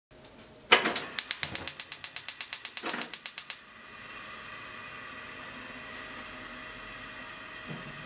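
Gas stove burner being lit: a loud click as the knob is turned, then the spark igniter ticking rapidly, about nine clicks a second for some three seconds, until the flame catches and settles into a steady burner hiss.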